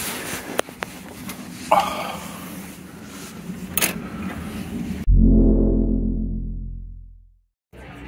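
Camera handling rustle with a few sharp clicks, then a deep cinematic boom sound effect about five seconds in that fades out over about two seconds, ending in silence.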